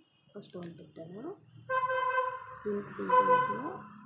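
A horn sounding one steady blast of about two seconds, starting a little under two seconds in, over people talking.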